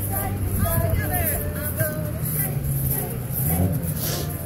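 Egg shakers shaken in a steady rhythm of about two shakes a second, over children's and adults' voices and a low steady hum.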